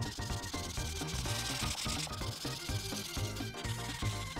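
Imagine Ink marker tip rubbing and scratching across paper in short repeated strokes, strongest in the first half, over background music with a steady beat.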